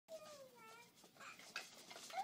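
A baby's faint, high-pitched vocalizing: one long falling coo in the first second, then a few short squeaky sounds.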